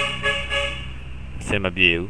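A man's voice speaking briefly in short phrases, over a steady low hum.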